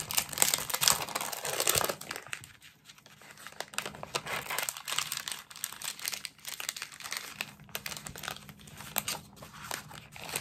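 Paper die-cut cards rustling, sliding and crackling as they are handled and shuffled in the hands, with many small clicks. Loudest in the first two seconds, then softer.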